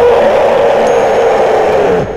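Loud sound-design effect: a steady, distorted drone held at one pitch with a hiss over it, cutting off at the end.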